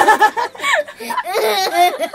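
A group of people laughing together, with a few words of talk between the laughs.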